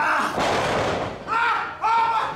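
A heavy thud of a wrestler landing on the wrestling ring's canvas, echoing in the hall, followed by two short high-pitched shouted cries.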